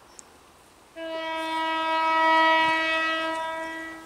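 Class 170 Turbostar diesel multiple unit sounding a single-tone horn: one steady note about three seconds long, starting about a second in, swelling and then fading.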